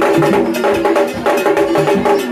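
Vodou drum music: tall hand drums and a bright, bell-like metal percussion keep a fast, dense rhythm over a held melodic line.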